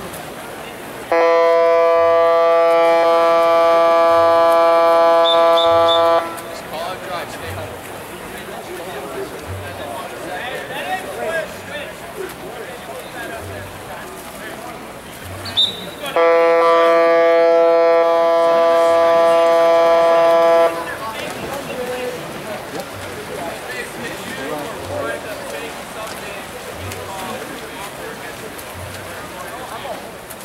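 A loud electronic game horn sounds twice, each blast one steady tone about five seconds long, the second coming about ten seconds after the first ends.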